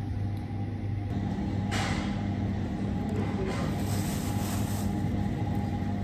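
Steady low hum of a supermarket, from refrigeration and ventilation, with brief crinkly rustles of a thin plastic produce bag a couple of times.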